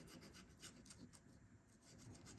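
Faint scratching of a coin rubbing the scratch-off coating off a lottery ticket, in a run of short strokes.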